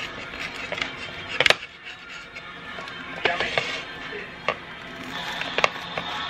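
Table knife cutting through a toasted grilled cheese sandwich on a plate: a handful of short, sharp crunches and clicks, the loudest about one and a half seconds in, over soft background music.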